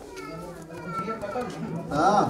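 Several people, children among them, talking in the background.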